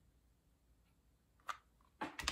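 Near silence: quiet room tone, broken once about one and a half seconds in by a single short, light tap.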